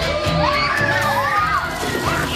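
A crowd of excited children shouting and squealing together, high voices rising and falling, over background music.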